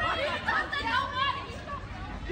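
Several voices talking over one another, unclear chatter with no words that can be made out.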